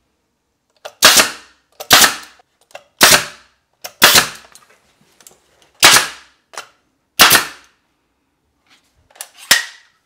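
Pneumatic brad nailer firing about seven times, roughly one shot a second with short pauses, each a sharp crack with a brief tail. It is tacking glued wainscoting strips to the wall to hold them while the adhesive sets.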